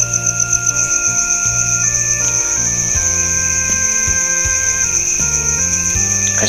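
Crickets chirping steadily in a fast, even high-pitched trill, over slow background music of held notes that change pitch every second or so.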